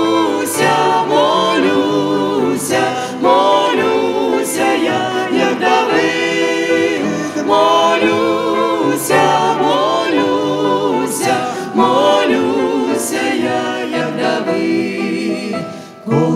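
A worship team of mixed men's and women's voices singing a Ukrainian hymn together in phrases, with wavering sustained notes, over keyboard and guitar accompaniment. The singing dips briefly near the end, between lines.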